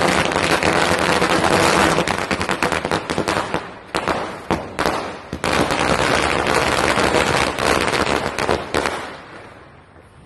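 Firecrackers exploding on the ground in a rapid, dense crackle of bangs, thinning to a few separate bangs about four seconds in, then crackling hard again before dying away near the end.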